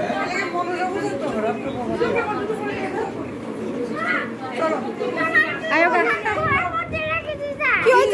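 Several people chatting and talking over one another, with a higher voice rising above the rest near the end.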